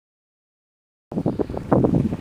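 Silence for about the first second, then wind buffeting the microphone in a snowstorm: a loud, gusty rumble with a few sharp knocks.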